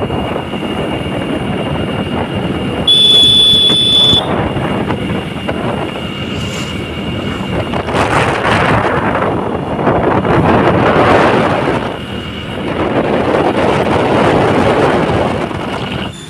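Wind rushing over the phone's microphone with road noise while riding on a motorbike. A vehicle horn sounds once for about a second, about three seconds in.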